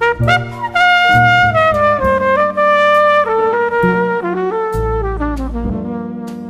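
Jazz trumpet playing a slow phrase of held notes that steps downward, over piano, bass and drums with cymbal strokes.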